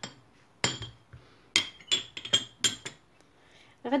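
Metal spoon clinking against glass: a quick run of about seven sharp, ringing clinks between about half a second and three seconds in.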